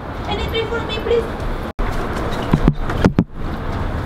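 Steady outdoor background noise picked up by a handheld camera being carried, with a few footsteps and handling knocks around two and a half to three seconds in; the sound cuts out briefly a little under two seconds in.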